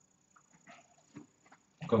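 Mostly quiet room with a few faint, brief sounds, then a man starts speaking near the end.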